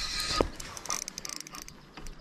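Spinning reel working against a hooked fish: a short whirring burst that stops about half a second in, then a quick run of faint clicks a little past the middle.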